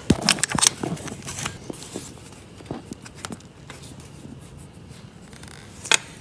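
Small metal parts of a hydraulic clutch actuator being handled and fitted onto the clutch arm by hand: a quick run of clicks and taps in the first second, then scattered faint scrapes and taps, and a sharper click just before the end.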